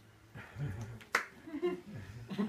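A single sharp smack of hands about a second in, with brief soft voice sounds before and after it.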